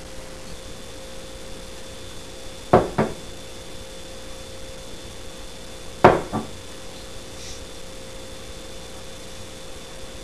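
A pint glass of beer knocking down onto a wooden table twice, each time as a quick double knock, about three seconds in and again about six seconds in. A faint steady hum runs underneath.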